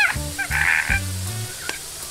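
A woman shrieking in comic alarm, the first cry falling sharply in pitch, with more short squeals after it. Beneath her voice runs playful background music made of short, stepped low bass notes.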